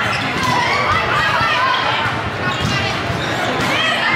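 Indoor volleyball rally: the ball being set and hit, with many voices of players and spectators calling out, echoing in a large gymnasium.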